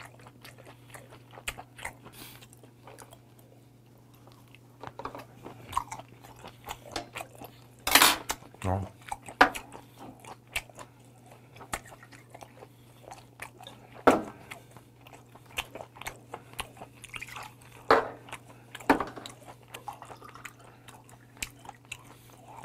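Close-miked chewing of boiled white whelk meat: wet mouth sounds and sharp smacks and clicks, scattered and uneven, over a steady low hum. In the second half beer is poured from a glass bottle into a glass.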